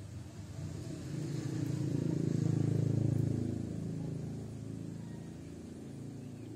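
A low rumble with a steady hum in it, building to its loudest about three seconds in and then fading away.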